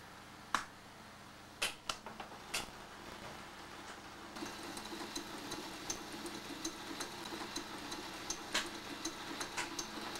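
Switches on Robby the Robot's wooden control box clicking several times, then from about four seconds in a steady mechanical whir with faint rapid ticking as more of the robot's moving parts are switched on and run.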